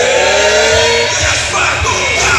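Live performance of a song: a man singing into a handheld microphone over an amplified backing track with a heavy bass beat, holding one long, slightly falling note for about the first second.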